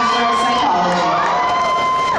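Audience cheering, with several long drawn-out whoops held over a noisy background of crowd sound; the held calls slide down in pitch as they end, one about two-thirds of the way in.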